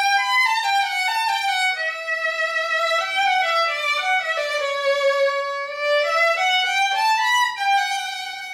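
Old German lionhead violin, labelled Johann Paul Schorn, played solo with the bow, freshly set up with a new bridge and strings. It plays a slow, sustained melody that steps downward over the first five seconds and climbs back up near the end.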